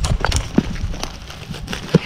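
Footsteps and hands scrabbling in loose stone and broken-brick rubble: an irregular run of short clicks and knocks as stones shift and clatter.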